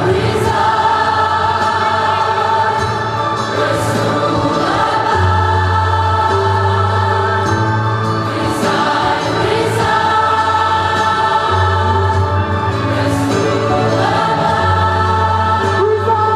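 Large gospel choir singing together in harmony, over an accompaniment with sustained bass notes that change every couple of seconds, in a cathedral.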